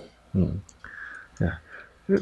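Two brief, low murmured vocal sounds about a second apart, like short hums of assent, with a faint steady high tone between them.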